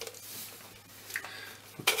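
Faint handling noise from hands shifting their grip on a small telescope tube, with a few light clicks.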